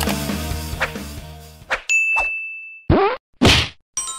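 Rock music fading out, then subscribe-button sound effects: a bright ding held about a second, a quick falling swoop, and a short burst of noise near the end.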